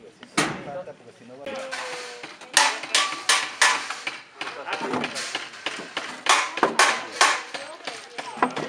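A quick, irregular series of sharp knocks on wood, several a second, starting about two and a half seconds in: wooden tapial formwork boards being struck and set in place.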